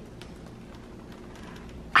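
Quiet room tone: a low steady hum with a few faint clicks near the start.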